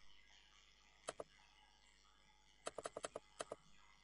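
Faint clicking of a computer keyboard and mouse: a quick pair of clicks about a second in, then a rapid run of about seven clicks near the end, over near silence.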